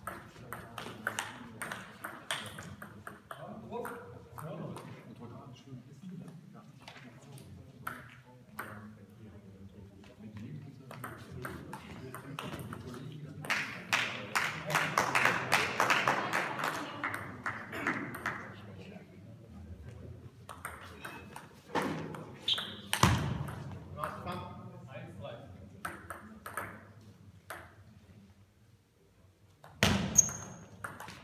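Table tennis ball clicking back and forth between bats and table in rallies, each hit a sharp, short tock in a reverberant hall. In the middle comes a few seconds of denser, louder clatter, like spectators clapping between points.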